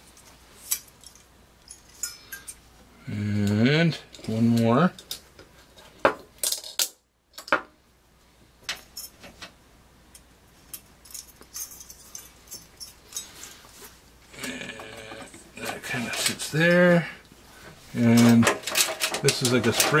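Light metallic clicks and rattles from an aluminium CPU heatsink and its spring-loaded clip being handled and fitted, with a man's voice heard a few times between.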